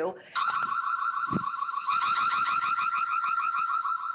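Ring Spotlight Cam's built-in security siren, set off from the phone app, sounding a loud, rapidly warbling electronic tone that starts a moment in and keeps going.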